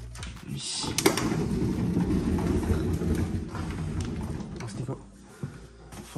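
Indistinct voices talking in a small room, with a sharp click about a second in; the talking fades near the end.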